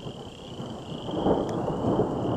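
Rolling thunder rumbling on without a break, swelling about a second in, under a steady high trilling chorus of frogs.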